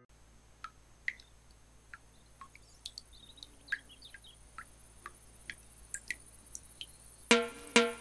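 Faint background dotted with short, scattered bird-like chirps. About seven seconds in, a quick run of loud, pitched percussive notes starts a musical jingle.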